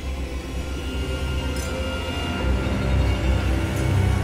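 Ominous horror film score: a low sustained drone with held tones above it, swelling louder a little over halfway through.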